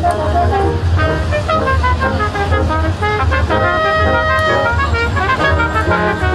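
A small brass ensemble of trumpets, trombone and tuba playing a piece together, with notes moving in step and some held chords, over a steady low rumble.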